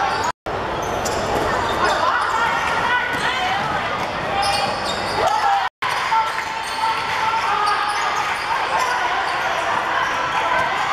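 Basketball bouncing on a wooden court during play, with players' and spectators' voices echoing in a large sports hall. The sound cuts out briefly twice.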